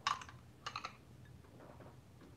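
Two quick clusters of light, sharp clicks, one right at the start and one just before the middle, with a fainter click near the end.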